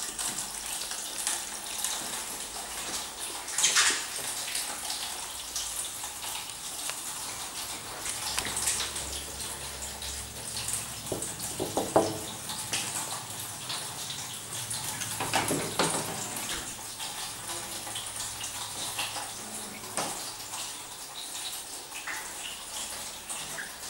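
A 1960s Segulift two-speed traction elevator at work: a steady rushing hiss with a low hum in stretches, dotted with small clicks and a few louder knocks.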